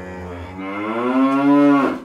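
A cow mooing: one long, low moo that swells louder and bends down in pitch as it ends.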